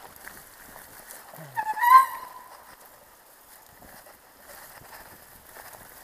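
Mountain bike riding over a dirt forest trail, with steady rattle and wind noise. About a second and a half in comes one short, loud, high-pitched squeal.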